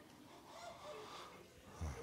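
Faint room tone in a pause of a speaking voice, with a brief low sound near the end just before the voice resumes.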